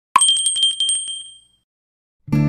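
Countdown-timer sound effect ending: a last short beep, then a bell ringing in a fast trill with a high ringing tone that fades away after about a second and a half.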